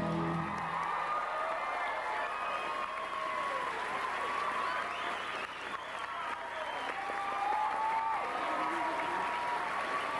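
Live theatre audience applauding and cheering, with shouting voices over the clapping, as the song's final music cuts off about half a second in.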